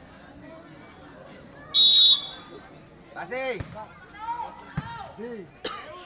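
Volleyball referee's whistle, one short steady blast about two seconds in, signalling the serve. Then come players' short shouted calls, and near the end a sharp slap of the ball being struck.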